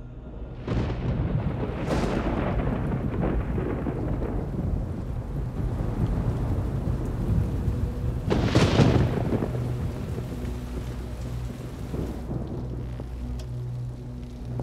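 Thunderclaps over steady heavy rain. There are three claps, about a second in, about two seconds in, and the loudest a little past eight seconds, each rolling off into the rain.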